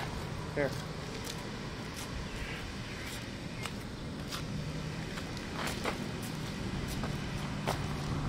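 Steady low mechanical hum, with scattered light clicks and taps as someone walks into place.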